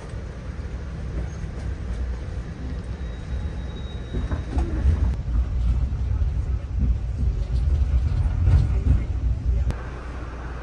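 Low, uneven rumble inside a stopped Amtrak passenger car, with passengers' voices faintly in the background.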